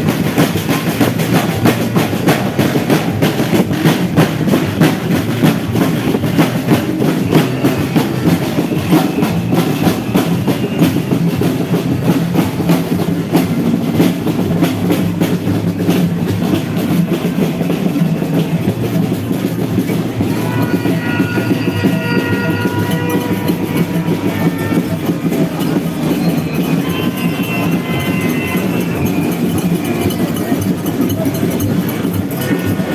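Snare drums beaten in a fast, steady marching rhythm over the noise of a large crowd walking. About two-thirds of the way through, high held tones join in over the drumming.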